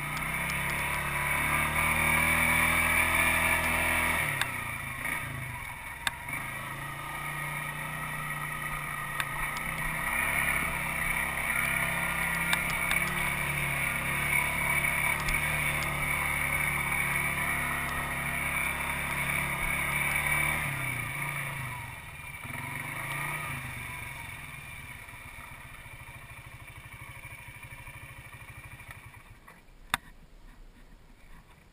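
ATV engine running under steady throttle while climbing a steep dirt hill, its note shifting about four seconds in. About twenty seconds in the revs fall and waver, and the engine settles to a slower, quieter idle in the last few seconds, with occasional sharp clicks of stones and ruts.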